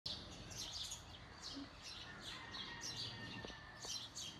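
Small birds chirping: short high chirps repeated about twice a second, faint.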